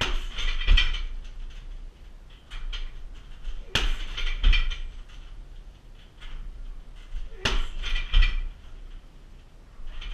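Shin kicks striking a heavy punching bag hung from a steel bag stand: three bursts about three and a half seconds apart, each a couple of hard thuds followed by a brief rattle of the stand.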